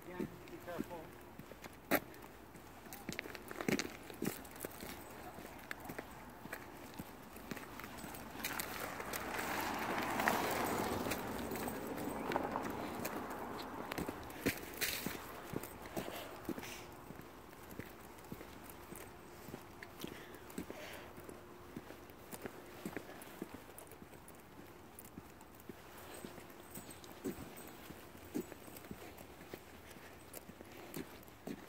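Footsteps of people walking on an asphalt road: soft, irregular steps throughout. A broader rushing sound swells up and dies away around ten seconds in.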